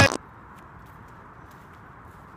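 A music track cuts off abruptly just after the start, leaving a faint, steady outdoor background hiss.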